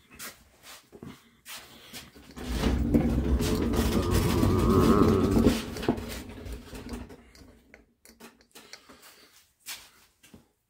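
Casters of a rolling camera stand rumbling across the shop floor as it is wheeled closer, a sustained rumble lasting about three and a half seconds with some wavering squeak in it. Scattered light knocks come before and after.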